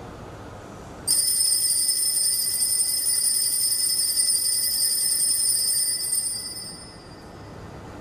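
Altar bells rung at the elevation of the host. A bright, high jingling ring starts suddenly about a second in, holds for about five seconds, then fades away.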